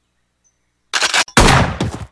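Shotgun fired several times in quick succession, starting about a second in, as a rapid run of loud blasts.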